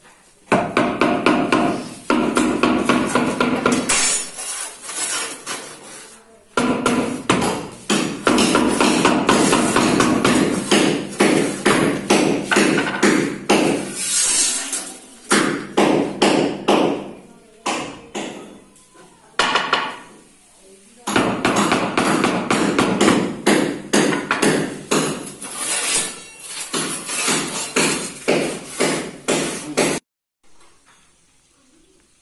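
Mallet tapping rapidly and repeatedly on marble floor slabs to bed them down into the sand, in runs of several seconds broken by two short pauses.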